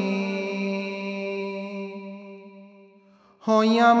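A male voice reciting a naat holds one long, steady note that slowly fades away over about three seconds. After a brief hush, the next sung phrase comes in loudly near the end.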